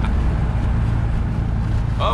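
Inside the cabin of a 1979 Alfa Romeo Alfetta 2.0 cruising at highway speed: a steady drone from its twin-cam four-cylinder engine, mixed with tyre and road noise. The car runs smoothly, with no vibration from its new driveshaft couplings.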